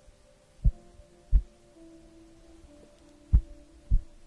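Four soft, deep thumps as a sheet of paper is handled against a fluffy microphone windscreen, with faint steady held tones underneath.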